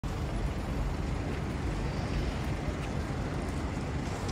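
Steady low outdoor rumble of city background noise, with no distinct event standing out.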